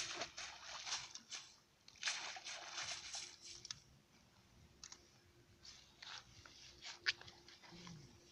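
Irregular rustling and crunching from a cast net being gathered and handled and from footsteps in wet grass, with a few sharp clicks (the sharpest about seven seconds in) over a faint steady hum.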